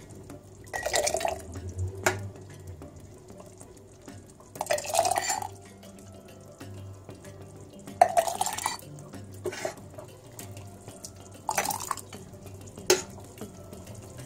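Thick hot tomato sauce being ladled from a steel pot and poured into a glass jar: four wet pours spaced a few seconds apart, with sharp clinks of the metal ladle against the jar and pot between them.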